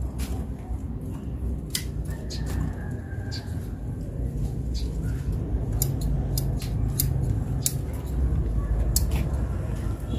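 Scattered sharp snips and clicks as bok choy stalks are cut and handled, over a low steady rumble.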